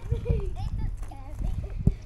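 Footsteps on a gravel path, a run of low thumps with a sharper knock near the end, with voices further off.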